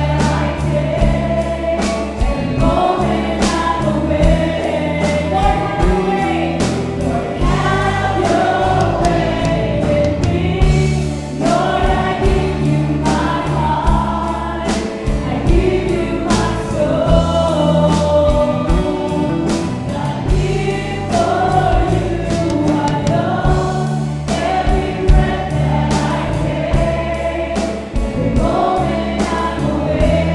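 Live worship band playing a gospel praise song: women's voices singing the melody over drum kit, electric bass, keyboard and guitars, with a steady drum beat throughout.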